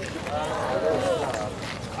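Quieter voices from the gathered group between a man's loud greetings, with a high-pitched voice prominent among them.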